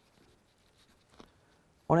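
Pen writing on paper: faint scratching strokes, with a light tick a little after a second in.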